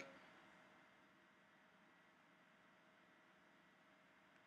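Near silence: faint room tone with a steady low hiss.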